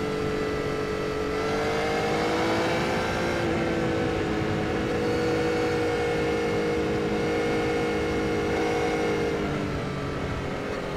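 Yamaha XSR900's inline three-cylinder engine running at a steady road cruise, its note rising a little about a second in and easing off near the end, with a rush of wind and road noise underneath.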